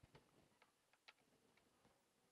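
Near silence, with about half a dozen faint clicks from a small Arduino board and LED leads being handled on a tabletop, the clearest about a second in.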